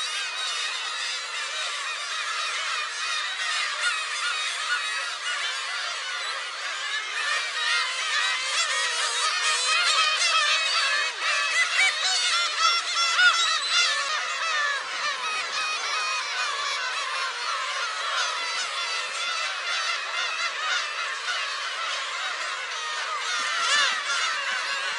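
A dense breeding colony of black-tailed gulls calling all at once: many overlapping cat-like mewing calls in a constant chorus, busiest in the middle.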